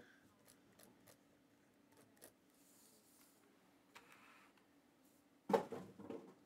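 Faint handling of a stack of trading cards: a few light clicks and a soft slide as cards are flipped through in the hand. A man's short exclamation, "oh", comes near the end.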